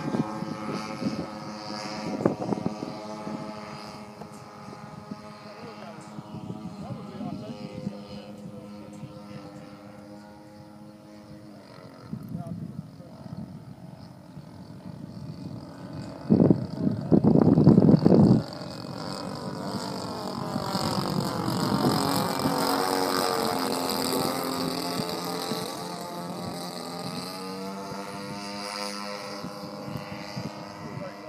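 Engines of a giant multi-engine radio-controlled foam airplane droning as it flies overhead, the pitch bending up and down as it passes in the second half. A brief loud burst of noise comes about halfway through.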